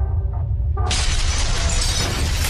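Intro sound effects over a steady deep rumbling drone; a little under a second in, a loud crashing, shattering burst breaks in and keeps going, the sound of the floor breaking apart in the animation.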